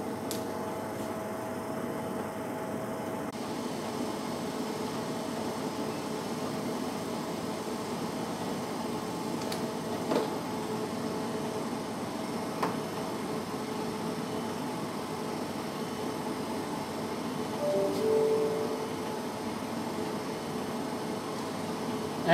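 Steady mechanical hum of lab equipment or room ventilation, with a few faint clicks of small plastic tubes being handled and a brief soft tone about eighteen seconds in.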